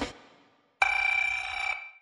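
A drum beat stops and dies away. About a second later comes a ringing, bell-like tone, several steady high pitches at once, that lasts about a second and then fades out.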